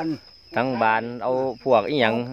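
An elderly man's voice in long, drawn-out phrases, over a steady high-pitched tone of insects.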